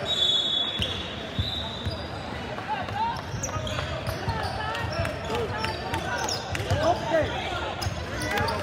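Sounds of a basketball game on a hardwood gym floor, echoing in the hall: the ball bouncing, sneakers squeaking sharply now and then, and indistinct voices from players and spectators.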